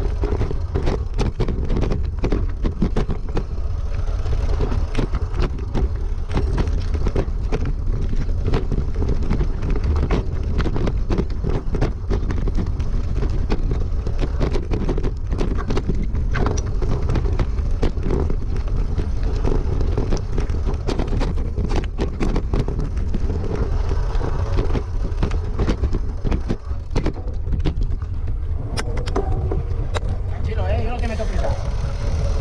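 Mountain bike descending loose rocky trail: a continuous rattle and clatter of tyres and frame over stones, with many sharp knocks, under a heavy low rumble of wind on the bike-mounted camera's microphone.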